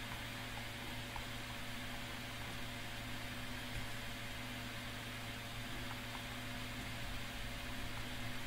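Steady room tone: a constant low hum with a few fixed pitches over an even hiss, as from a fan or electrical equipment running.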